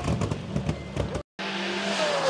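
Rally car engine running hard at a steady high note as the car approaches. Before it comes a rougher, noisier stretch of engine sound that cuts off suddenly just over a second in.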